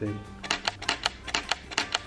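Camera shutter firing in a rapid burst: a run of sharp clicks, about seven a second, starting about half a second in.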